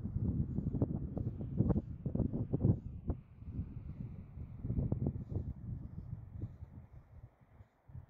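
Wind buffeting the microphone in uneven low gusts, dying away near the end.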